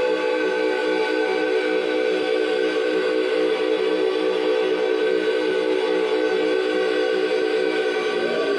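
Live drone music: a steady chord of held tones with a faint pulsing underneath, a new tone swelling in near the end.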